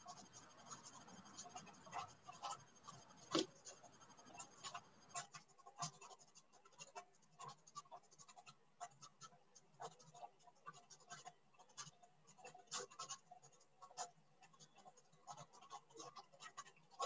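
Near silence on an open video-call microphone, broken by faint, irregular small clicks and scratches, with one sharper click about three seconds in.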